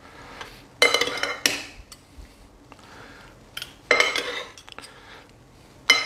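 Metal serving utensils clinking and scraping against a bowl as a pasta salad is tossed, in two bursts about a second in and about four seconds in, with a few single clinks between and at the end.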